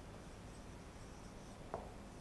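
Faint squeak and scratch of a marker pen writing letters on a whiteboard, with one short tick near the end.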